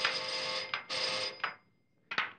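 Electric doorbell ringing in insistent presses: a long ring that breaks off, then two short rings, stopping about a second and a half in.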